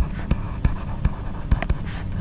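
Stylus tapping and scratching on a tablet screen while handwriting words, heard as a run of irregular short clicks.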